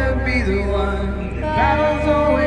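Music: a singer's voice over a karaoke backing track, with sung notes that slide in pitch.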